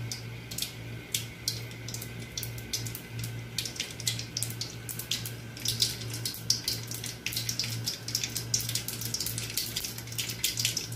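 Seeds sizzling in hot oil in a kadai: a steady sizzle broken by frequent sharp pops that come thicker from about four seconds in, as the tempering starts to splutter.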